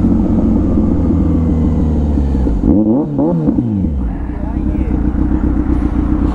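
Motorcycle engine running under way, then slowing down, with a brief rising-and-falling sound about halfway through, and settling to a steady idle as the bike comes to a stop.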